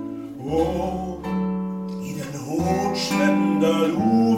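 A man singing a Swedish ballad with his own fingerpicked classical guitar accompaniment. Sung phrases bend over sustained bass notes, with a held guitar chord in the middle.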